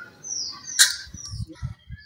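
A bird chirping, with a short high call that falls in pitch. A sharp click comes just before a second in, followed by dull low thumps.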